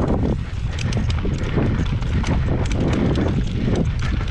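Enduro mountain bike running down a stony dirt trail: tyres crunching over gravel and rocks and the bike rattling, with many irregular clicks and knocks over a steady low rumble.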